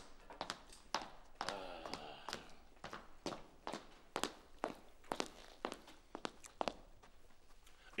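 A man's footsteps walking across a hard floor, a steady run of short footfalls. A brief voice sound comes about one and a half seconds in.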